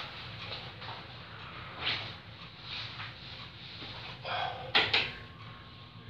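A few knocks and thumps of someone moving about and handling things in a small room: one about two seconds in, and a quick cluster near the end, the loudest of them a sharp knock. A faint steady hum comes in right after them.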